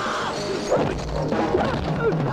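Action-film fight soundtrack: a music score under crashing and punching sound effects, with sharp impacts about a third of the way in and again a little past the middle.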